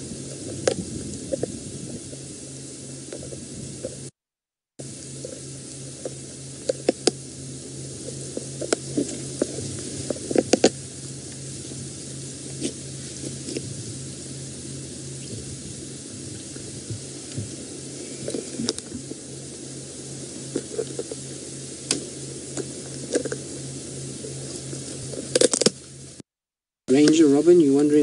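Lioness chewing a tortoise and cracking its shell: irregular sharp cracks and crunches, now sparse, now in quick clusters, over a steady low hum.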